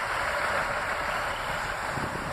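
Northern Class 156 diesel multiple unit running alongside a station platform: a steady, even noise without distinct knocks or changes.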